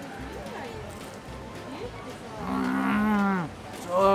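A man's drawn-out hum of enjoyment, "mmm", about a second long and rising then falling in pitch, as he tastes fried chicken. It comes about two and a half seconds in, after a couple of seconds of faint background.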